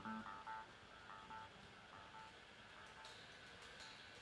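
Faint, short high notes picked softly on a guitar, about a dozen in the first two and a half seconds, over a quiet room.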